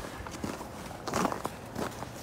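A few footsteps outdoors, the clearest about a second in and again a little over half a second later.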